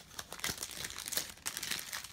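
Clear plastic wrapping being handled and crumpled, a run of irregular crinkles and crackles.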